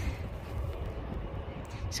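A steady low rumble with a faint even hiss above it and no distinct knocks or tones: general outdoor background noise.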